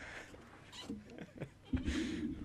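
Faint, indistinct human vocal sounds, with a louder low hummed voice starting near the end.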